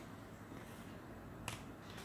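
Faint room noise with a single short, sharp click about one and a half seconds in.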